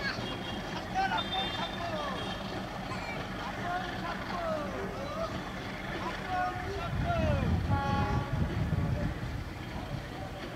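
Voices calling and chattering on a railway station platform over a steady background rumble. A deeper train rumble swells about seven seconds in and eases off a couple of seconds later.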